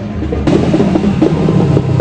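Parade marching band playing, led by drums, starting about half a second in.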